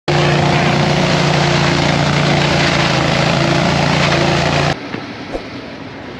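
Leaf vacuum running loud and steady, its hose nozzle sucking up dry leaves: a rush of air over a steady engine hum. It cuts off abruptly about four and a half seconds in, leaving much quieter outdoor sound and a single click.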